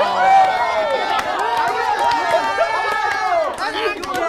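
A small group of people cheering and shouting together, many voices overlapping.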